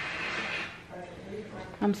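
Television audio in the room being turned down: a hissy noise drops away within the first second, leaving faint voices from the set, until a woman starts to speak near the end.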